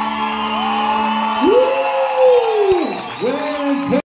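A held low violin note ends about a second and a half in, and audience whoops and cheers follow. One long whoop rises, holds and falls, then shorter ones come after it.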